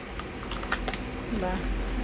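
A sheet-mask foil pouch being handled and the gel-soaked mask pulled at: a quick cluster of small sharp clicks and crinkles about half a second in, over a low handling rumble.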